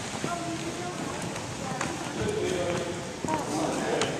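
Background chatter of children's voices in a large gymnasium, with scattered footsteps on the hardwood floor as the group moves across the court.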